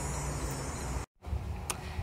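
Steady low outdoor rumble with a faint hum, broken by a brief total dropout about a second in where one clip is cut to the next.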